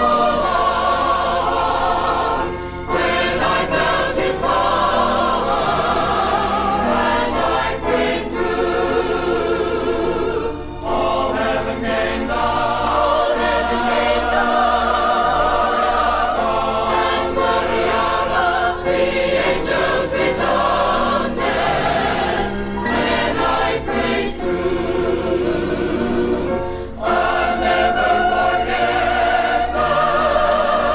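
A 40-voice choir singing a gospel song, played from a vinyl LP, in sustained phrases with short breaks between them.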